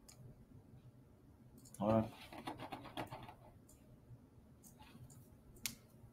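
A few soft computer mouse clicks around a brief spoken word, and one sharp click near the end, over quiet room tone.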